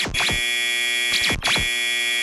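Cartoon sound effect: a steady, high electronic buzzing drone like an alarm. Short falling zaps come twice near the start and twice more about halfway through.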